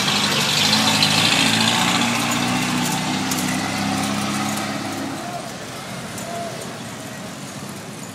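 A motor vehicle's engine running close by, steady in pitch, fading away over several seconds against general street noise.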